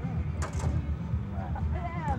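Indistinct voices of people talking, no words made out, over a low, uneven rumble. A sharp click comes about half a second in.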